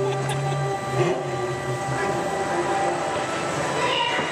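Radiator Springs Racers ride vehicle running along its track: a steady mechanical hum and rumble with several held tones, and a low drone that drops away within the first second.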